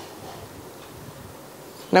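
Steady background hiss and faint buzz from the recording microphone during a pause in speech, with a voice starting just before the end.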